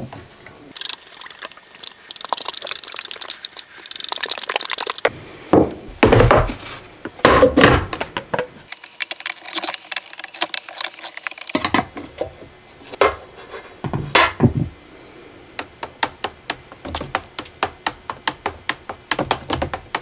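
A metal gallon paint can being opened and its primer stirred: knocks, clicks and scraping of tools on the lid and rim, ending in an even run of quick ticks, about four a second, from a wooden stir stick against the inside of the can.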